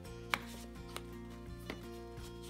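Quiet background music with a few short, sharp taps and clicks of a plastic ring binder being handled, the loudest about a third of a second in.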